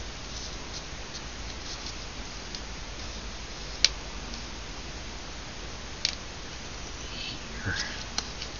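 Light rustling of a paper strip being handled and folded by hand over a steady hiss, with two sharp clicks about four and six seconds in and a soft knock near the end.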